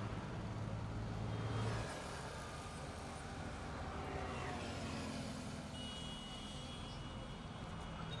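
Road traffic on a highway, with cars and motorbikes passing as a steady wash of engine and tyre noise. A deeper engine rumble in the first two seconds cuts off suddenly, and a few short, thin high beeps come later on.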